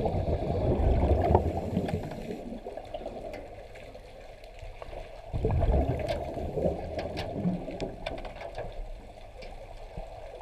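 Underwater bubbling and churning heard through a submerged camera. A loud bubbling rush at the start fades over about two seconds into quieter churning, then comes again about five seconds in, with faint clicks.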